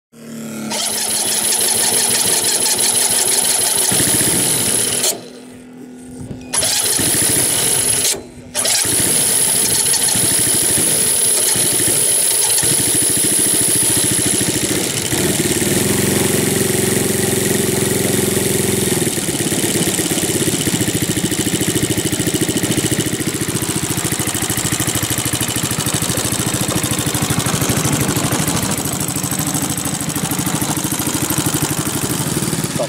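Single-cylinder Valach 60 engine of a large-scale RC Fokker D.VII biplane running with its propeller turning. The sound drops out briefly twice, around five and eight seconds in.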